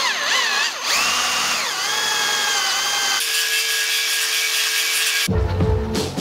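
A cordless drill boring a hole through a white PVC cap. The motor whine rises and dips in pitch as the bit bites for about three seconds, then runs at a steady pitch for about two more. Music comes in about five seconds in.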